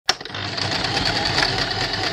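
Embroidery machine stitching sound effect: a sharp click just after the start, then a fast, steady mechanical rattle of the needle working.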